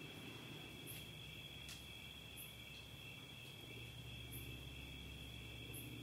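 Faint, steady chorus of crickets, with a low hum beneath it.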